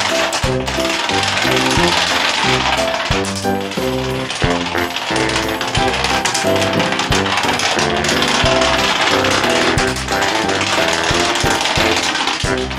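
Dominoes toppling in a long run, a continuous rapid clatter of many small tiles falling against each other, with music playing over it.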